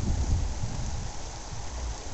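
Wind buffeting the microphone: an uneven, gusting low rumble over a faint steady hiss, easing slightly toward the end.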